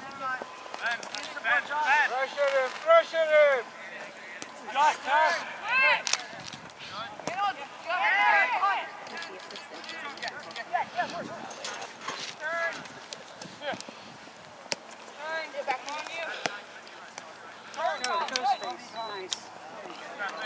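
Distant, unintelligible shouts and calls from youth soccer players and sideline spectators, coming in short bursts throughout, with a few sharp knocks of the ball being kicked on turf.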